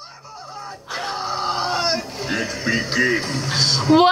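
Animated TV episode soundtrack: music mixed with sound effects and some voices, quiet at first and louder from about a second in.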